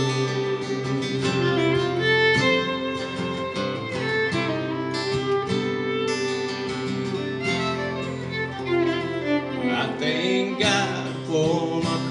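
Acoustic guitar strummed with a fiddle playing the melody over it: an instrumental break between sung verses of a song.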